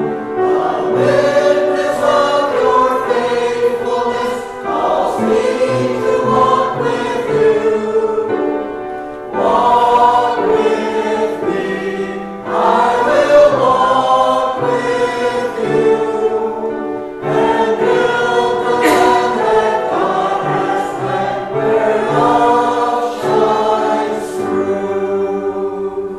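A church choir singing a hymn in long sustained phrases with short breaks between them. The singing dies away at the very end.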